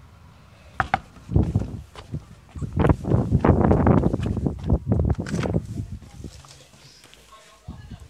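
Two quick knocks on a white uPVC front door just under a second in, then running footsteps and rustling from the phone being jostled while running, fading about six seconds in.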